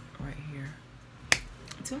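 A single sharp click a little past halfway through, after a brief hummed vocal sound from a woman.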